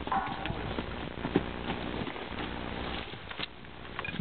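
Horse moving around a dirt corral: scattered hoof steps and knocks, with one sharper knock about a second and a half in.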